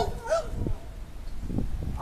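A yellow Labrador puppy whines briefly at the start. After that comes low rumbling wind noise on the microphone, with a few faint knocks.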